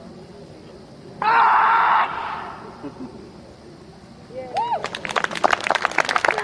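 A loud shouted command to the dog, held for under a second, about a second in. From about four and a half seconds, spectators start clapping and cheering.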